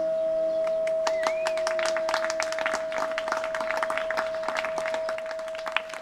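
Bansuri flute holding one long final note as the piece ends. About a second in, audience clapping breaks out and grows over the held note.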